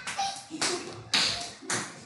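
Computer mouse clicking: four sharp taps about half a second apart, each trailing off.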